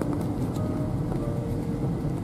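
Steady road and engine rumble inside a moving car's cabin, with soft music playing underneath.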